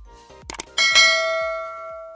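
Two quick clicks, then a bright bell ding that rings on and slowly fades: a subscribe-animation sound effect of a cursor clicking the notification bell. Soft background music continues underneath.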